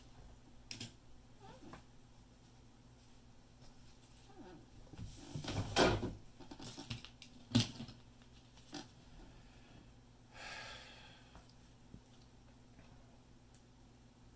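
Handling noises at a workbench: a cloth and a cell pack are moved about, then multimeter test leads are picked up. There is a louder rustle about five to six seconds in and a sharp click at about seven and a half seconds, over a faint steady hum.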